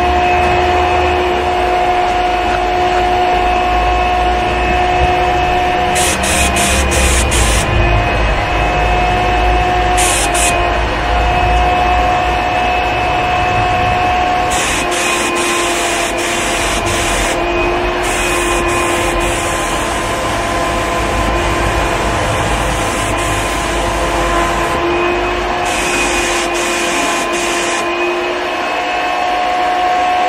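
QT5 HVLP spray turbine running with a steady whine, while the gravity-feed spray gun's trigger is pulled in several bursts of hissing atomised air and paint, some short and some several seconds long. Low wind rumble on the microphone.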